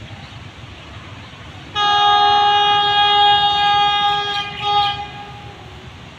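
Locomotive horn of an approaching train sounding one long chord of several steady tones, starting sharply about two seconds in, with a short second swell near the end before it stops.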